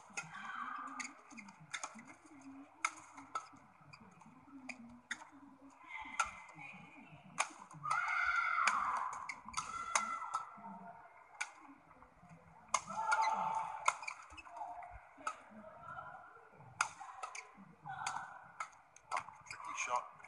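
Badminton rally: rackets striking the shuttlecock in an irregular series of sharp clicks, roughly one every half second to a second, with voices from the arena rising and falling between shots.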